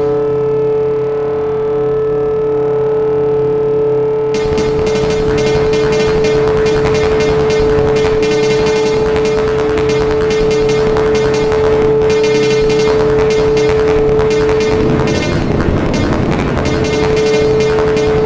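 Experimental electronic music made on an EMS Synthi VCS3 analogue synthesizer and computer: a steady held tone over low drones. About four seconds in, a dense, rapid crackling layer joins. Near the end the held tone drops out briefly and then returns.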